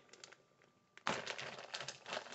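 A large plastic zip-top bag holding a textbook crinkles as it is handled. The dense crackle starts suddenly about halfway through, after a near-silent first half.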